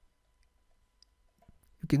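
Near silence with a few faint, short clicks, then a man starts speaking near the end.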